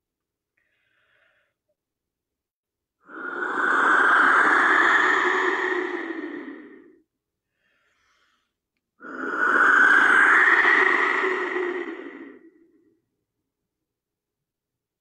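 Clay wind whistle blown twice, each a long, breathy rushing tone of about four seconds that rises slightly in pitch.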